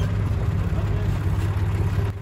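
Red International Harvester tractor engine idling steadily, an even low-pitched running sound.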